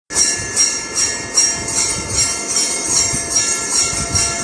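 Bells ringing rhythmically, about two and a half strokes a second, with a bright, shimmering ring over a few steady tones.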